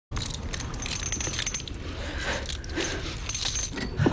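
Light metallic jingling and clinking: many small quick clicks with brief high ringing notes, over a steady low rumble.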